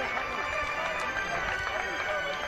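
Indistinct overlapping voices of rugby players and spectators calling out across an open field, with no clear words.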